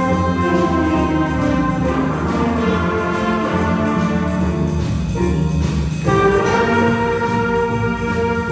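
School jazz band playing a shuffle, with saxophones and brass over piano, upright bass and drums. Just before six seconds in the band drops back for a moment, then comes back louder.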